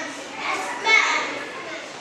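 Children's voices: a group of young children answering together, with room echo.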